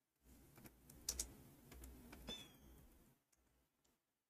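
Faint typing on a computer keyboard: a few scattered keystrokes against near silence, entering a search.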